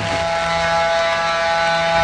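A held synthesizer chord: several steady tones sounding together without a change in pitch, fading out near the end.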